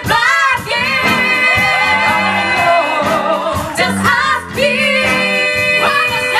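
Live soul band, with saxophones, trumpet, electric guitar, keyboard and drums, backing several female singers. Long sung notes are held with vibrato.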